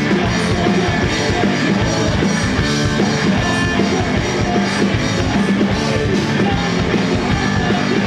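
Live rock band playing loudly through a concert PA: drum kit, electric bass and guitars, with a man singing lead at the microphone.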